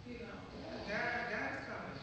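A person's voice speaking, louder about halfway through.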